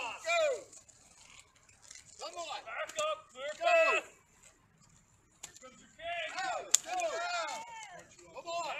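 Raised voices shouting in several short bursts, with no words that can be made out. A single sharp crack near the end is the loudest moment.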